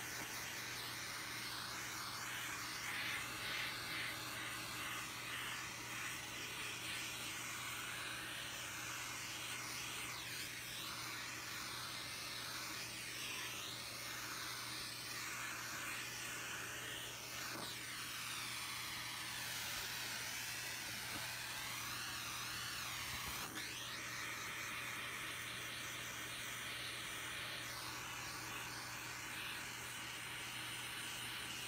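Handheld butane torch flame hissing steadily as it is passed over wet acrylic pour paint to pop air bubbles.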